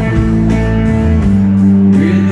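Live country band playing, with guitar to the fore and a steady beat.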